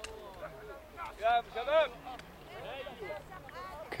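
Voices of people in a crowd some way off, with a couple of loud, high-pitched calls between about one and two seconds in and fainter voices afterwards.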